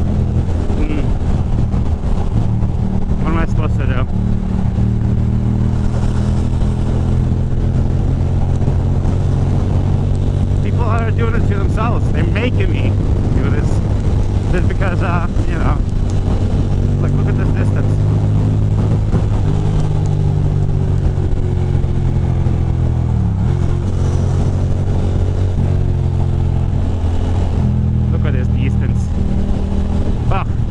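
A 2006 Ducati Monster 620's air-cooled L-twin engine running steadily at highway cruising speed, with wind noise on the microphone. The engine pitch holds level apart from a brief dip and recovery about three-quarters of the way through.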